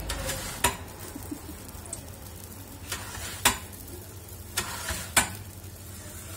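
Wood fire crackling inside a pizza oven: a handful of sharp pops, the loudest about a second in and halfway through, over a steady low rumble.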